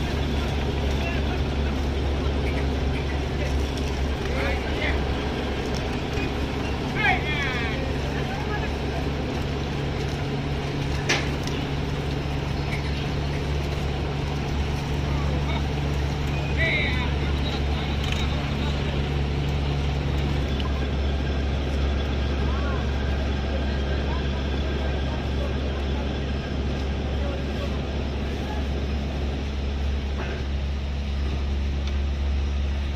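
Steady low drone of sugar-factory machinery, with a second, higher hum that stops about two-thirds of the way through. Voices call out now and then, and a single sharp knock sounds about a third of the way in.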